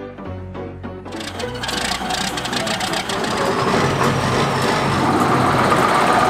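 Background music gives way about a second in to the John Deere 790 excavator's diesel engine running with a dense clatter, growing steadily louder.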